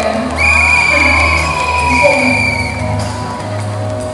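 Live Mandarin pop performance: a female singer's amplified voice over a backing track. A high, steady whistle-like tone holds from about half a second in until near the three-second mark.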